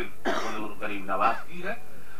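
A man's gruff, hoarse voice, unsung and without the music that came before: a rough, throaty burst about a quarter second in, then short spoken phrases that slide up and down in pitch.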